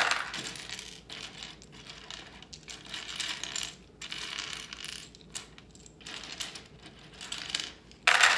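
Small plastic LEGO pieces clattering and clicking: a loud clatter right at the start as pieces drop into a plastic sorting bowl, then intermittent rattling as hands sift through a pile of bricks on a tray.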